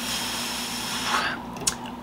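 A man blowing out a long breath through pursed lips, a steady hiss that stops about a second in, then a faint click near the end.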